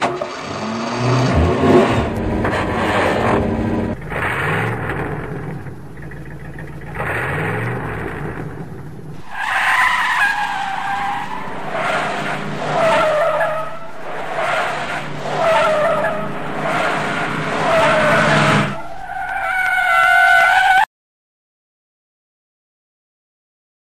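Car sound effects: an engine revving in rising sweeps, then a run of repeated tyre squeals from about halfway through. The sound cuts off suddenly about a second before the end.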